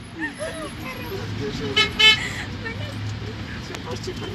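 Two short vehicle-horn toots in quick succession about two seconds in, over the steady low running of a minibus engine.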